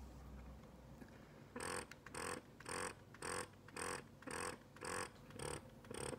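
Medela Freestyle Flex breast pump running in stimulation mode: its motor cycles in quick, even pulses, about two a second, starting about a second and a half in. Nothing is attached to its tubing ports, so it sounds louder than it does in use.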